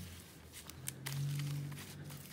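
Light taps and rustles of plastic-packaged metal craft dies being shuffled on a desk, with a brief low hum about a second in.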